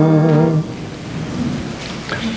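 A held pipe-organ note, the close of the preceding music, stops about half a second in. It is followed by a low, even rustling and shuffling of the congregation in the reverberant church.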